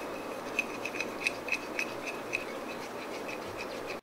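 Wooden craft stick stirring crushed blue eyeshadow powder into clear glue: a steady scraping with small clicks about three or four times a second.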